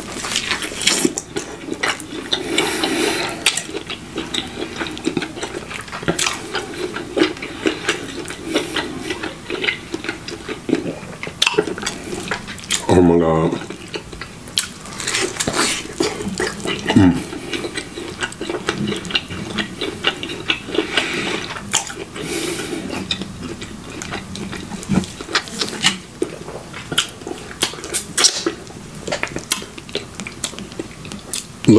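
Close-miked biting, tearing and chewing of a tomahawk ribeye steak held by the bone: wet smacking and clicking mouth sounds. A short hummed moan comes about halfway through.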